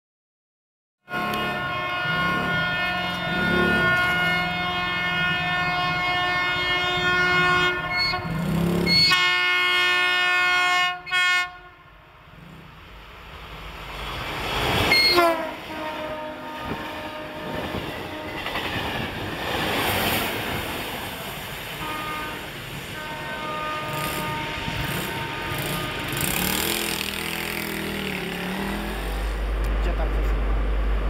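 CP Class 1400 diesel locomotive and its train. From about a second in there is a steady, many-toned whine that bends in pitch and cuts off suddenly after about eleven seconds. Then comes the noisier rumble of the train running past, with some fainter whining.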